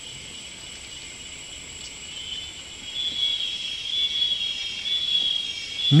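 Steady high-pitched chorus of rainforest insects, with a louder, pulsing call joining in about two seconds in.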